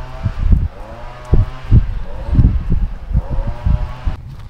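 Wind buffeting the microphone in irregular low gusts, over the steady hum of a motor vehicle's engine that rises and falls in pitch.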